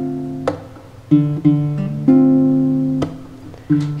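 Acoustic guitar playing a few chords, each left ringing and fading, with no singing over them. A sharp tap sounds about half a second in and again about three seconds in.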